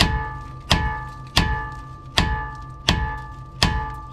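Hammer striking the steel steering knuckle of a Honda Ridgeline six times, about one blow every 0.7 s, each blow ringing briefly. The blows are meant to knock the tie rod end's tapered stud loose from the knuckle, with its nut left loosely on.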